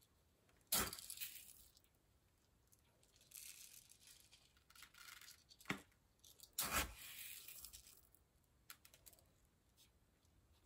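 Dry rice scooped and poured from a small plastic scoop into a fabric-covered shoe, heard as short spells of soft rattling hiss. Two sharp knocks stand out, one about a second in and a louder one past the middle.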